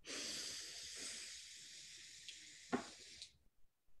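A long, slow inhale through the nose into the microphone: a steady hiss lasting about three seconds that fades gradually before stopping. There is a short click near the end.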